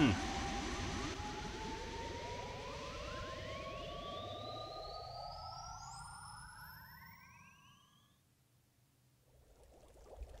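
Science-fiction spaceship sound effect for an alien craft streaking away: several electronic whines climb in pitch together and fade away over about eight seconds.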